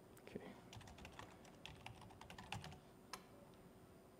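Faint typing on a laptop keyboard: a quick run of keystrokes, ending with one separate keystroke about three seconds in, while a username and password are entered on a login page.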